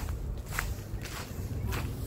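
Footsteps, about two steps a second, over a steady low rumble.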